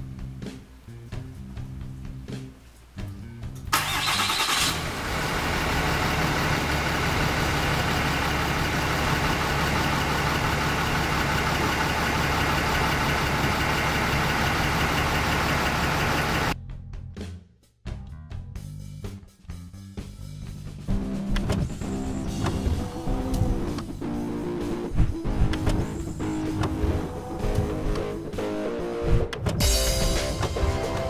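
About four seconds in, a 2012 Dodge Ram's Cummins turbo-diesel engine starts up abruptly on remote start and runs steadily for about twelve seconds, then cuts off suddenly. Rock guitar music plays before and after it.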